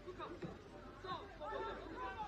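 Footballers on the pitch calling and shouting to each other during play, several voices overlapping, louder in the second half.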